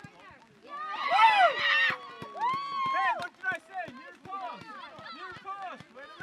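Spectators cheering and shouting right after a goal in a youth soccer game. Many voices burst out together about a second in, the loudest moment, and calls and shouts carry on after it.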